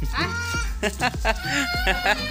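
Background music with a deep bass beat about twice a second, under a high, wavering voice.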